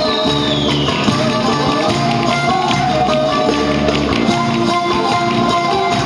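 Live Turkish folk dance music: an ensemble of bağlamas (long-necked lutes) playing, with dancers' wooden spoons clacking in a steady rhythm for the kaşık spoon dance.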